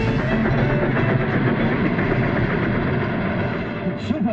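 Loud, dramatic orchestral cartoon score driven by pounding drums and timpani, dense and continuous.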